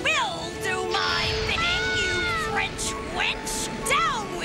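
Cartoon soundtrack music with several short swooping, arching cries over held tones. One comes at the start, a longer falling one about halfway, and another near the end.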